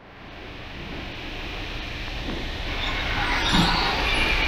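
Train of heritage passenger carriages rolling past along the platform: a steady rumble and hiss of wheels on rails that starts faint and grows gradually louder.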